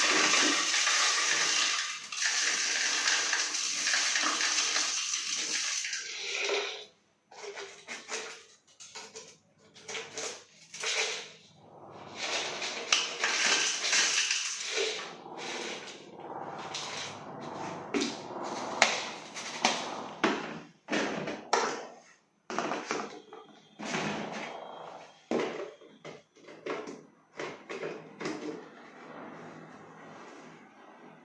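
Pouring from a plastic jar through a funnel into a dishwasher's salt reservoir: a steady hiss for about six seconds, then a run of short, irregular knocks and rattles of plastic as the jar and funnel are handled.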